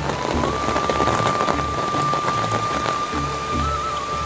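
Steady rain falling, mixed with background music that has a regular low beat and a long held high note coming in about half a second in.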